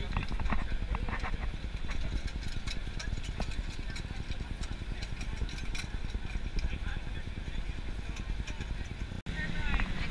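Busy city street ambience: a low traffic rumble, voices of passing people, and many small clicks and taps of footsteps on pavement. Voices come up more clearly near the end.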